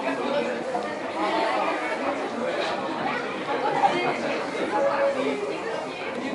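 Overlapping chatter of many people inside a busy café, voices mixed together with no clear words, and a single brief knock a little past halfway.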